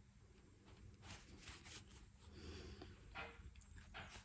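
Near silence, with faint brief rustles of crocheted yarn being handled as a doll's arm is lined up for sewing.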